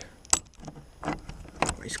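A few short, sharp clicks and knocks, about every half to three-quarters of a second, with a word starting near the end.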